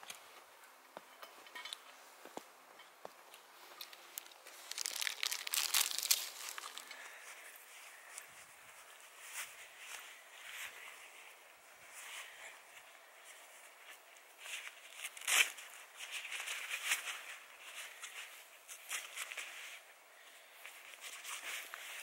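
Plastic snack wrapper crinkling as it is handled, then the rustle of gloves being pulled on over the hands, in scattered bursts with a sharp snap about two-thirds of the way through.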